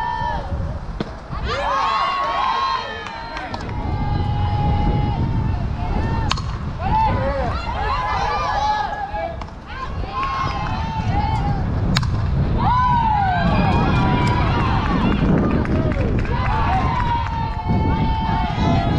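Girls' voices calling and chanting across a softball field, high-pitched and often held, over a steady low rumble. There are two sharp cracks, about six and twelve seconds in.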